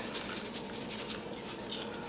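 Faint, even rustle of dry seasoned bread crumbs being shaken from a canister into a bowl of ground meat.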